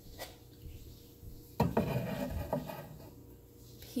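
Ceramic mugs being handled on a wooden shelf: a light tap just after the start, then a louder knock about a second and a half in, followed by about a second of scraping and rubbing.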